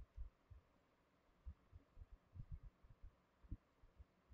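Near silence: room tone broken by about a dozen faint, low, irregular thumps, the loudest about three and a half seconds in.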